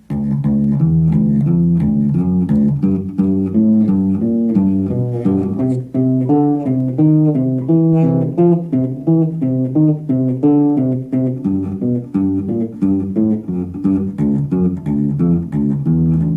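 Electric bass guitar played fingerstyle: a continuous, busy line of short plucked notes. The fretting fingers lift and move for each note, the usual way many players finger it, rather than staying down on the strings.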